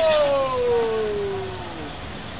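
One long drawn-out vocal cry, an excited 'ohhh', held for almost two seconds and falling steadily in pitch as it fades away.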